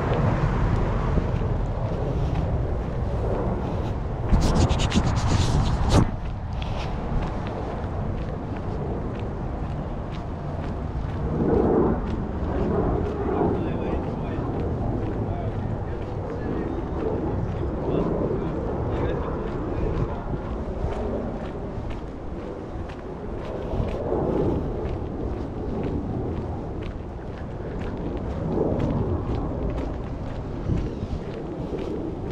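Outdoor street ambience with wind noise on the microphone, and a louder rush of noise from about four to six seconds in.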